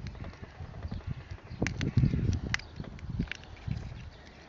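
Plastic case of a DJI Spark battery being worked back together by hand. A few sharp clicks and knocks come from the cover and tabs in the middle stretch, with rubbing and handling noise between; the cover is not yet seating fully.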